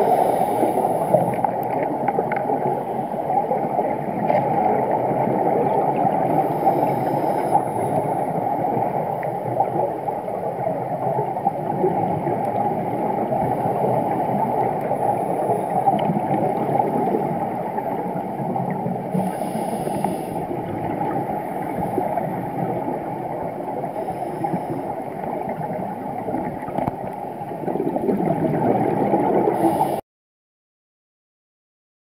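Muffled underwater rushing, with a scuba diver's regulator exhaling bubbles in short hissing bursts every several seconds.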